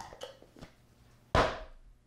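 Plastic lid being screwed onto a plastic tub of Flex Paste: a few faint clicks, then one sharp thump about a second and a half in as the lid is pressed down.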